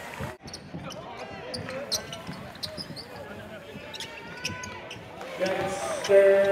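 Live basketball game sound in a large arena: crowd voices and chatter, with a basketball dribbled on the hardwood. Near the end a steady held tone of several pitches starts, like music over the arena sound.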